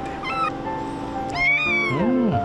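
A kitten about a month old meowing: a short high mew about a third of a second in, then a longer, louder mew about a second and a half in.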